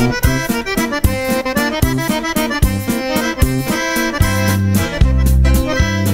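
Norteño corrido music in an instrumental passage: a button accordion plays the melody over a steady strummed and drummed rhythm, with no singing. Deep bass notes come in strongly near the end.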